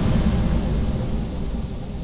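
Closing impact effect of an electronic dance track: a low rumble with a wash of noise above it, fading steadily away.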